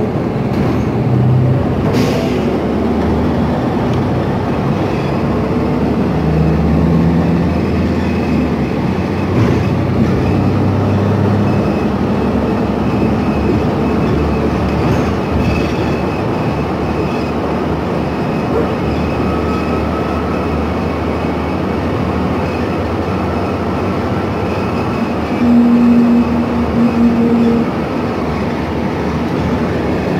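Interior noise of a New Flyer XN60 articulated bus under way: its Cummins Westport ISL G natural-gas engine and road noise running steadily, the engine note stepping in pitch several times in the first half. A brief steady low tone sounds near the end and is the loudest moment.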